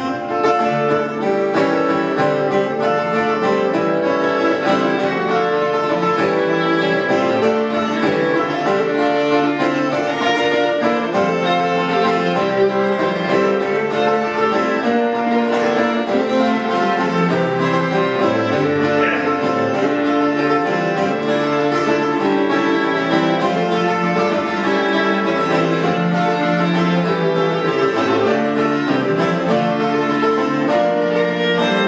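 Instrumental opening of an Irish folk song: twelve-string acoustic guitar and cittern strumming and picking together, with a fiddle playing the tune partway in.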